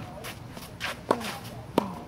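Tennis rally on a hard court: two sharp pops of the ball, about a second in and again near the end, the ball bouncing and then struck back off a racket. Quieter shoe scuffs and footsteps on the court come between them.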